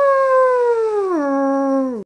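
A person howling like a wolf: one long, loud howl that slides slowly down in pitch, drops sharply about a second in, then holds on a lower note before stopping near the end.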